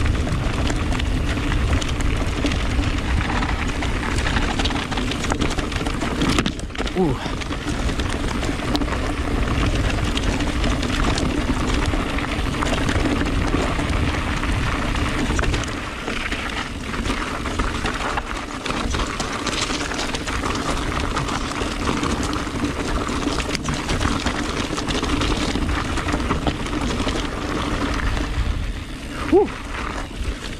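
Full-suspension electric mountain bike rolling fast down a loose gravel trail: a steady rumble of tyres over stones and wind on the camera, with a short sharp sound near the end.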